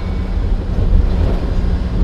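Engine and road noise heard inside the cab of a small manual-transmission truck driving in third gear: a steady low rumble.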